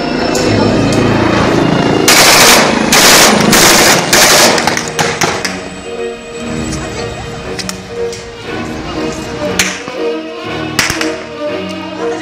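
Automatic gunfire: four loud bursts between about two and four and a half seconds in, with a single sharp crack near the end, over background music that runs throughout.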